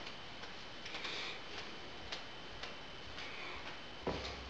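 Quiet kitchen room tone with a faint steady high tone and scattered soft ticks.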